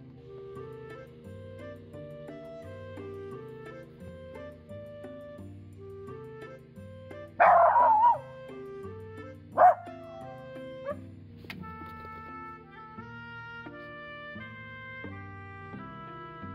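A Jack Russell terrier barking suddenly: a drawn-out bark about seven seconds in, a short sharp bark about two seconds later, and a faint yip a second after that, over background music.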